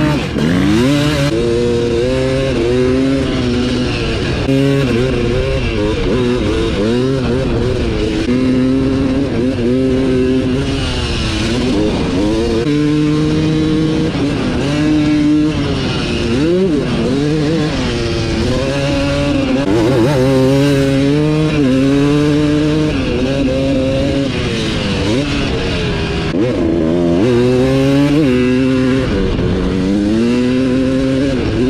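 Suzuki RM250 two-stroke dirt bike engine, ridden hard: its pitch climbs and drops again and again as the rider opens and shuts the throttle and shifts through the gears.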